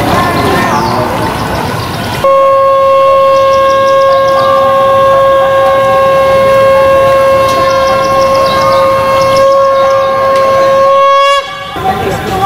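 Conch shell (shankh) blown in one long, loud, steady note of about nine seconds, starting about two seconds in and breaking off near the end with a slight rise in pitch. Before it come voices and bird chirps.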